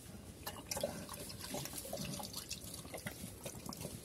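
A black pig slurping and lapping liquid feed from a bowl, with quick irregular wet smacks and clicks.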